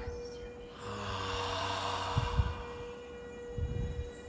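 A person's long audible breath into the microphone, swelling and fading over about a second and a half, over a steady held tone of background music.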